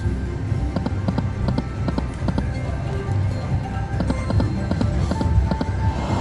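Dancing Drums slot machine game sounds as the reels spin: a quick run of clicks and ticks with the machine's music over a low steady rumble.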